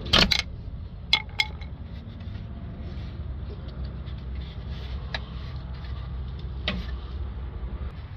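A rubber DPF pressure hose being prised off its metal pipe with a trim tool under a Range Rover Sport: a few short sharp clicks and scrapes, one at the very start, two about a second in and single ones later, over a steady low hum.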